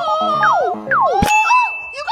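Cartoon-style sound effects: two quick falling whistles over a short jingle of notes, then a sharp clang about a second in, followed by a held high ding.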